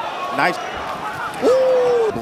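Boxing TV commentary: a man says "Oh, nice." Near the end comes a single held tone of about half a second, slightly falling, whose source is not clear.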